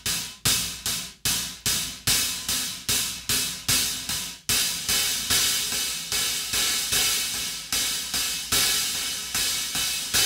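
A pair of 18-inch hi-hats, made from two crash cymbals, played with a stick in a steady drum-kit groove at about two to three strokes a second, with a big, washy ring. From about halfway through the hats ring on between strokes, as if played more open.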